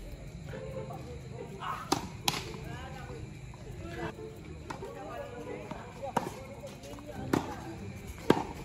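Tennis ball being struck by rackets and bouncing on a hard court during a rally: a few sharp pops, two close together about two seconds in and two more, further apart, in the second half.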